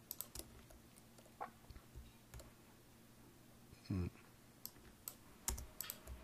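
Faint computer keyboard keystrokes and mouse clicks at irregular intervals, bunching up near the end. There is a brief low sound about four seconds in.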